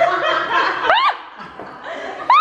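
People laughing, with a short, high-pitched laugh that rises sharply in pitch about a second in.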